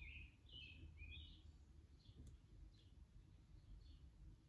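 Near silence: quiet room tone with faint bird chirps in the background, a few short chirps in the first second and a half and a couple of weaker ones later.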